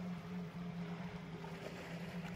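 A faint, steady low hum over a light background hiss.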